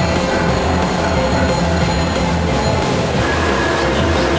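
A train passing close by, a loud steady rumble of rolling rail cars, with music laid over it.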